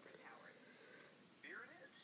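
Faint whispered speech, with soft hissing consonants.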